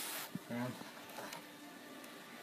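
A brief spoken "okay", then low room noise with a few faint ticks from thin copper wire being handled in the fingers.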